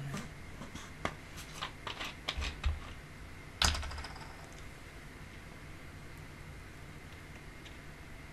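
A few light clicks and knocks, as of small objects being handled close to the microphone, the loudest about three and a half seconds in, followed by a faint steady room hum.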